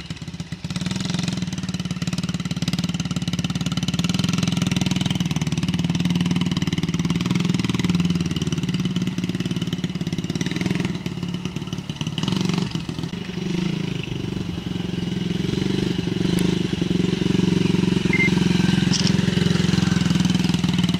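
Yamaha TT-R90 mini dirt bike's small four-stroke single-cylinder engine running at a steady pace as it is ridden around, a little quieter about two-thirds of the way through as it moves off and louder again near the end as it comes back.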